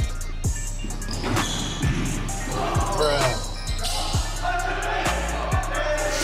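A basketball bouncing on an indoor hardwood court, a string of separate bounces, over a steady background music track, with players' voices in the middle.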